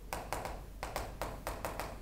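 Chalk writing on a chalkboard: a quick run of short taps and scrapes, several a second, as a word is written in small letters.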